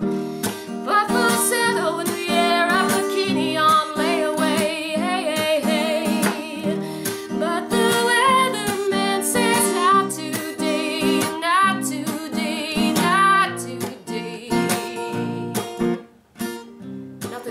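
Acoustic guitar strummed, with a woman singing over it.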